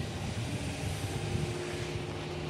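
Steady low rumble with a faint steady hum underneath, like outdoor vehicle or machinery noise.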